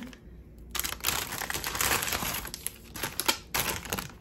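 Plastic bags crinkling and rustling as keychains in clear plastic sleeves are handled and pulled from a plastic shopping bag. The crinkling starts under a second in and runs in crackly bursts until just before the end.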